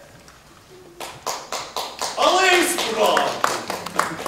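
A quiet first second, then a run of sharp, irregular clicks, with loud voices from the stage joining about two seconds in.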